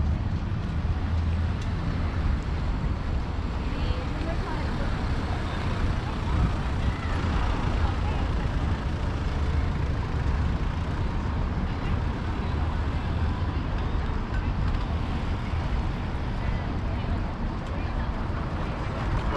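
Busy city street ambience: a steady low rumble of road traffic with the chatter of passers-by.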